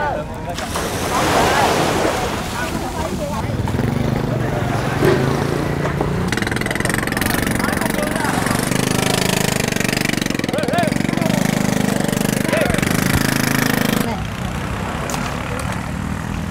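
Surf washing up on a sandy beach, with people's voices in the background and a low steady engine hum from about four seconds in that stops near the end.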